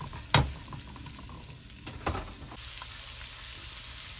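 Minced garlic sizzling in hot fat in a nonstick pan as it is stirred with a silicone spatula. A steady hiss fills out in the second half, with a sharp knock about a third of a second in, the loudest sound, and a lighter one about two seconds in.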